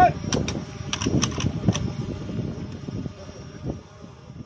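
Guard of honour's ceremonial rifle salute: a shouted command, then a ragged run of about seven sharp cracks in the next second and a half, over the murmur of a large crowd.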